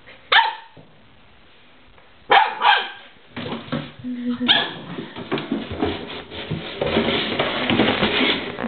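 Goldendoodle puppy barking in short, sharp barks: one just after the start, two close together a little over two seconds in, and another about four and a half seconds in. From about three and a half seconds on there is a busy, uneven scuffling noise under the barks.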